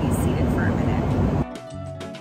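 Loud, steady cabin noise of a private jet in flight: a deep rumble with a hiss over it, described as so loud. It cuts off abruptly about one and a half seconds in, and background music follows.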